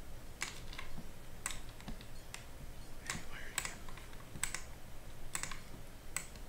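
About eight sharp clicks from working a computer at a desk, irregularly spaced, roughly one every half second to a second, over a faint steady low hum.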